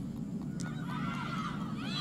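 Several high voices shouting and calling over one another, the calls thickening from about halfway in, over a steady low background rumble.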